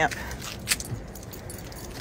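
Dog's collar tags jingling as it walks down a rubber-matted ramp, with a few sharp light clicks about half a second to a second in.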